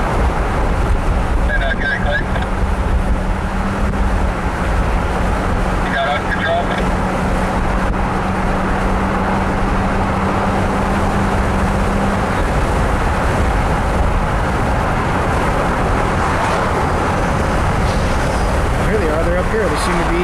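Road noise inside a moving car: steady tyre and engine noise, with a low hum that stops about twelve seconds in.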